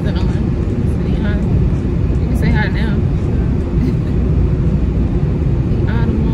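Loud, steady low rumble inside a car's cabin, with a woman's voice faint beneath it.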